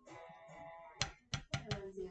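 A faint steady pitched hum for about a second, then five light, sharp clicks in quick succession: fingernails tapping and pressing on the painted vinyl record as a number sticker is pressed down.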